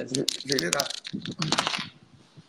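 Handling noise on the phone's microphone: a rapid run of clicks and rustles as the phone is picked up and moved, stopping just before the end.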